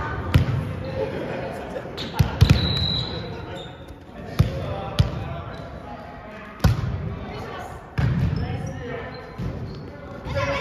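Volleyball rally in an echoing gymnasium: several sharp slaps of the ball being hit, spaced irregularly across the rally, with players' voices between them.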